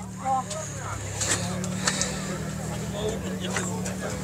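Faint background voices over a steady low engine hum, with a few light clicks.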